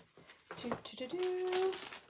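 A woman's voice holding one short, steady wordless note, like a hum, with a few light clicks and rustles before it as craft supplies are packed away.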